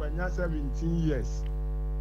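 Steady electrical mains hum, a low buzz with a row of even overtones that holds unchanged.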